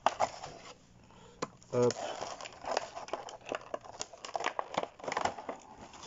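Clear plastic blister packaging of a Pokémon card box crinkling and crackling as gloved hands handle it, in a run of short sharp crackles and clicks.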